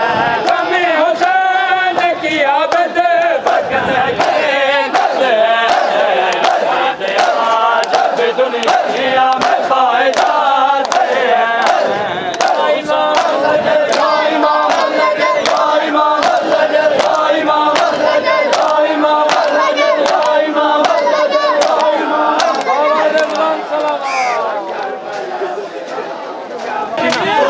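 A crowd of men chanting together while beating their chests with open hands in matam, the slaps landing in a steady rhythm of about two a second under the massed voices.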